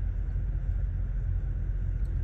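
Semi truck's diesel engine idling, a steady low rumble heard from inside the cab.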